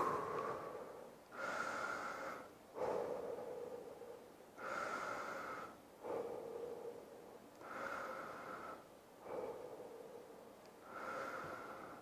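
A man breathing deeply and slowly to recover after exercise: about four slow breaths, each an audible inhale followed by an exhale.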